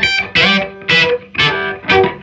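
Gibson Les Paul electric guitar played: short picked phrases of notes and chords, each ringing briefly, with short gaps between them.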